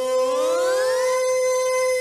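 Music of a TV station ident: a held note is joined by notes sliding upward for about a second, which then settle into a sustained chord.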